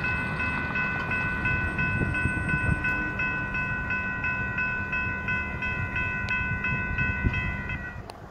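Two different electronic crossing bells at a railroad grade crossing ring together, a steady electronic ding repeating about three times a second over a low rumble. They keep ringing while the gates rise after the train has cleared, and cut off suddenly at the very end as the gates reach upright.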